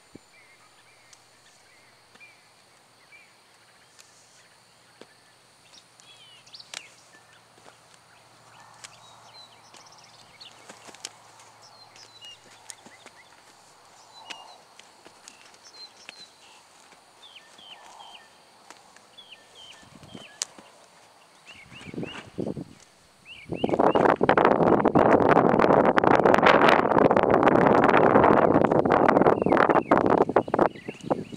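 Faint bird chirps over a quiet background. About 23 seconds in, a loud, continuous scuffing and rustling begins as a lead rope is swung and thrown around a young horse that moves about on sand.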